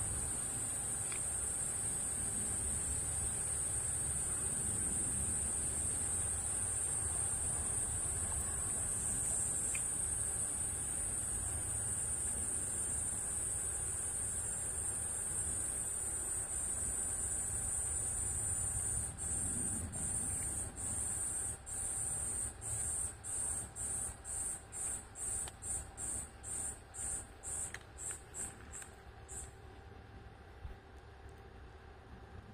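A cicada's steady high buzzing that, about two-thirds of the way through, breaks into pulses that grow quicker and shorter, then stops near the end.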